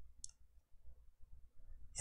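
A single faint computer-mouse click about a quarter second in, over quiet room tone.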